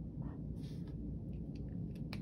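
Faint scratching of a pen writing the letter A on notebook paper, over low room hum.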